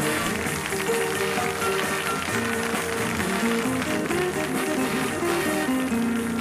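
Big band playing an instrumental passage, with saxophones, clarinet and brass alongside an electric guitar.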